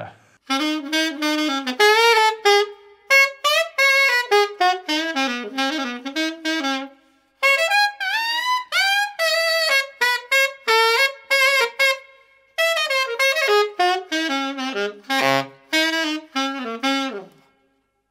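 Keilwerth EX90II alto saxophone played solo: a melody in three phrases, with two short pauses, about 7 and 12 seconds in.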